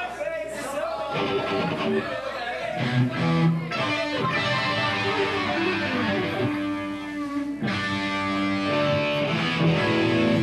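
Amplified electric guitars sounding loose held notes and chords between songs, noodling and checking their sound before the next number starts.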